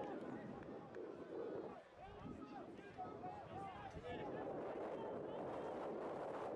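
Faint, distant voices of players and spectators calling out across an open playing field, with short scattered shouts and chatter over a low outdoor background.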